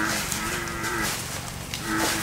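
A cow mooing: one long call, with a second call starting near the end.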